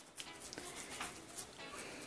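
Faint soft pats and squishes of hands rolling a mashed potato and tuna mixture into a croquette.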